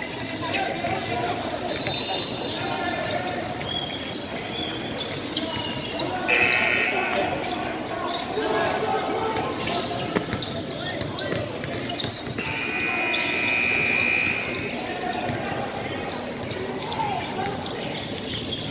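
Busy basketball-gym sound: crowd chatter echoing in a large hall, with a basketball bouncing on the hardwood court. A few short high-pitched squeaks come through, the longest about twelve to fourteen seconds in.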